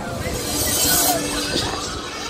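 Fairground ride ambience: music playing over voices and ride noise, with a brief hiss in the first half and a short steady tone about a second in.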